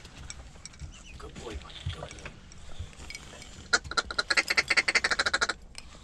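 A duck call blown close by in a fast run of short quacks, about ten a second, for nearly two seconds near the end.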